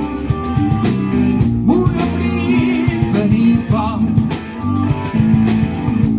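Live rock band playing loud and steady: drum kit, bass guitar and electric guitar, with some bent notes.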